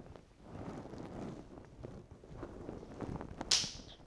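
Quiet classroom room tone with faint, distant voices and a short hiss about three and a half seconds in.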